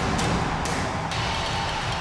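Short television programme transition sting: loud, dense music that starts abruptly and holds steady, stopping as the presenter's speech resumes at the end.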